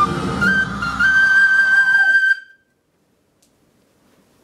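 Tin whistle playing the closing phrase of a folk-metal melody, ending on a long high held note; all sound cuts off about two and a half seconds in.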